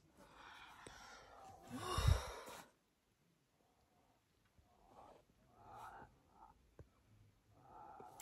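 A woman's long, breathy sigh on waking, growing louder and ending abruptly after about two and a half seconds. Then near quiet with a few faint, short calls of distant animals.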